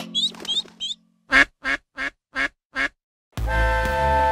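A cartoon duck quacking five times in quick, even succession after a held musical note fades out. Upbeat music starts abruptly near the end.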